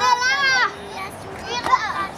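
A young child's high-pitched, wordless voice: a wavering call lasting about half a second at the start, then a shorter cry near the end, with other children playing in the background.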